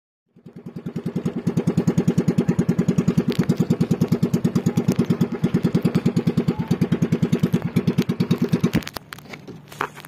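Outrigger boat's engine running with a fast, even putt-putt. It swells in over the first second or so and drops away about nine seconds in, leaving a faint hum and a few light knocks.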